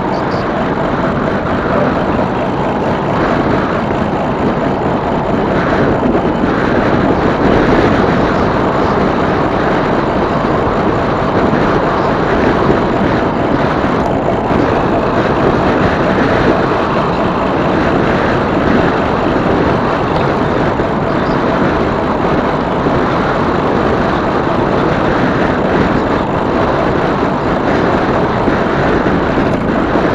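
Steady rushing wind noise on the microphone of a camera riding on a moving e-bike.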